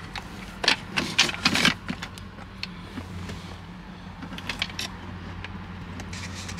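Light clicks and rattles of plastic trim and a wiring harness being handled by hand inside a car's center console, as the loose connector for the all-terrain control module is pulled out, in two short flurries over a steady low hum.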